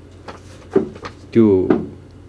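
A man's voice speaking Nepali in short phrases with pauses, and a few faint clicks in the gaps between words.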